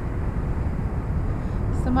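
Steady low rumble of wind buffeting the microphone, mixed with distant city traffic noise.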